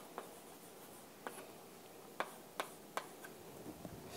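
Chalk writing on a chalkboard, faint, with about five sharp taps of the chalk striking the board.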